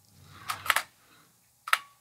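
Clicks and light handling noise from a hand working a DSLR camera on a slider rig: a short cluster of clicks about half a second in and one more click near the end.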